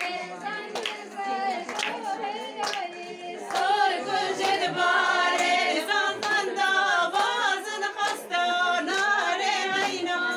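A group of women singing a Kurdish folk song unaccompanied, with hand claps through it; the singing grows louder about three and a half seconds in.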